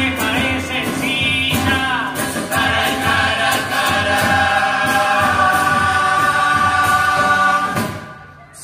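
A youth murga chorus sings in full harmony over the murga's bass drum, snare and cymbal strikes. The song builds into one long held final chord that cuts off sharply at the very end.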